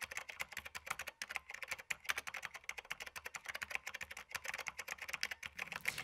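Fast, continuous typing on a keyboard: a dense run of sharp key clicks that stops shortly before the end, as for an internet search.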